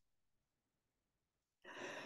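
Near silence, then a soft intake of breath by a woman starting about a second and a half in.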